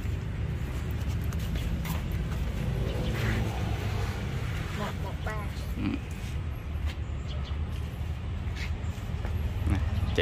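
A steady low rumble, with brief faint snatches of a voice a few times and a few light clicks.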